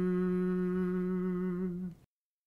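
A man's voice holding the final long note of an Icelandic rímur chant, one steady pitch that cuts off just before the end.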